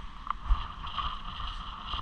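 Wind buffeting the microphone on the open deck of a ferry in a storm, over the steady hum of the ship's machinery.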